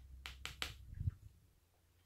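Handling of a journal: a quick run of four light clicks, then a soft low thump about a second in.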